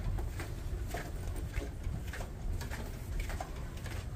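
Footsteps and handling noise from walking down a carpeted ship corridor, a scatter of soft short knocks over a steady low rumble.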